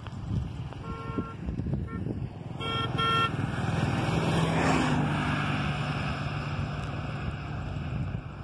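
Vehicle horn beeping: one short honk about a second in, a brief blip, then two quick beeps. A motor vehicle then passes close by, its engine note falling as it goes, and a steady engine hum carries on afterwards.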